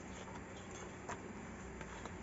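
A few faint, sharp clicks and light handling noise as a small decorative lamp is handled, over a low steady room hum.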